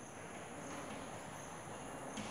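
Chalk writing on a blackboard: faint scratching strokes with a thin high squeal that comes and goes.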